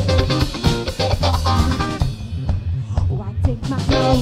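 Live band music with saxophone, electric guitar and drum kit. About two seconds in, the cymbals drop out for a sparser break, and the full band comes back in near the end.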